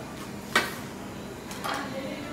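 A whole watermelon being split with a knife: one sharp crack about half a second in, then a rougher crackling as the rind gives way and the melon comes apart into halves near the end.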